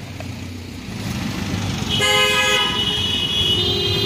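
A vehicle horn sounds about two seconds in, a held tone of well under a second, with a second horn tone near the end, over a steady rumble of street traffic.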